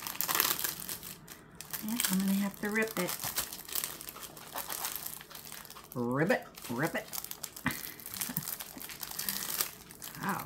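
Clear plastic packaging sleeve of a small diamond painting kit crinkling and crackling as hands work it open to get the kit out. A few short wordless vocal sounds come in between.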